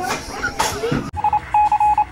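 Electronic beep sound effect: a quick burst of short beeps at one mid pitch, then a couple of slightly longer ones, starting about a second in. It comes just after a man's speech.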